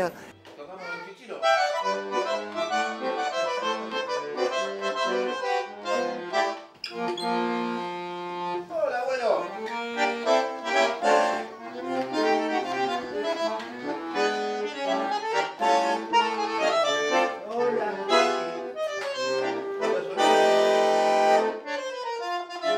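Bandoneon playing a passage of chords and melody lines. It starts about a second and a half in, holds a chord a few seconds later, and ends on a loud sustained chord near the end.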